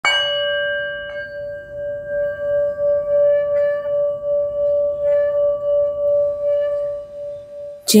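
A struck bell rings out at the start and is struck again lightly about a second in. Its steady ring wavers slowly in loudness as it fades over several seconds. A sung chant begins right at the end.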